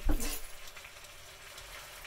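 Steak tips frying in a pan with a faint, steady sizzle, after a brief clatter at the start.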